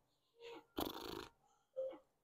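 Faint sounds from a person: a brief low murmur, a short noisy breath lasting about half a second, then another brief murmur near the end.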